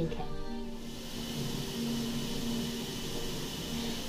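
Bath tap running warm water into a tub: a steady hiss of pouring water that sets in about a second in, over soft background music.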